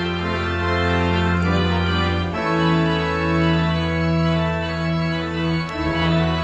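Church pipe organ playing slow, sustained chords over a deep pedal bass. The chord changes about two and a half seconds in and again near the end.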